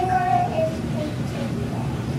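A young child's voice holding one long, slightly wavering sung note that stops about half a second in, played back through the room's speakers from a classroom video.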